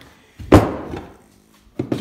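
A single sharp knock of a steel part being set down on a plywood workbench, ringing briefly as it dies away, then a small click near the end.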